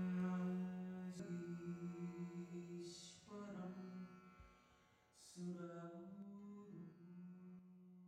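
A voice chanting a mantra in long held notes, moving to a new pitch about every two seconds with short breaks between phrases, growing quieter toward the end.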